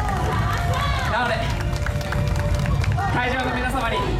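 A group of yosakoi dancers shouting and calling out together as their dance music stops about a second in, over outdoor crowd noise.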